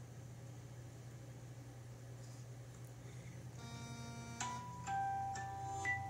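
A phone ringtone starts about three and a half seconds in: a short melody of steady electronic notes, changing every half second or so, over a faint low hum.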